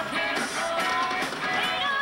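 Live rock band playing a cover song: electric guitar over a steady drum beat, about two beats a second.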